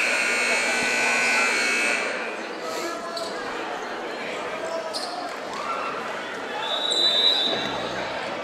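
Gymnasium scoreboard horn sounding steadily for about two seconds as the game clock hits zero, echoing in the hall. After it, a crowd chatters, a basketball bounces on the hardwood a few times, and a short high whistle sounds near the end.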